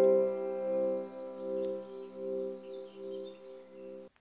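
A held keyboard chord at the end of the countdown music, ringing on and slowly fading with a wavering pulse about twice a second, then cut off abruptly.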